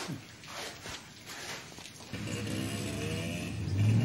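A motorcycle engine comes in about halfway through and runs steadily, growing a little louder toward the end.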